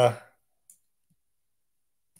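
A man's voice trailing off on a drawn-out "uh", then near silence broken by one faint click of a computer key being pressed, a little under a second in.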